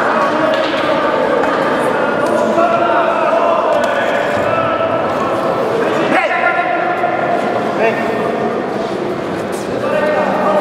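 Voices of spectators and corners shouting and talking over one another in a reverberant hall, with a sharp thud of a gloved punch landing about six seconds in and a lighter one near eight seconds.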